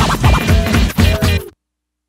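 Hip hop track's closing bars: a drum beat with turntable scratching that cuts off suddenly about one and a half seconds in.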